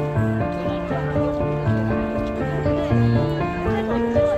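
Background music: a melody of held notes that move in steps over a lower bass line, at a steady level.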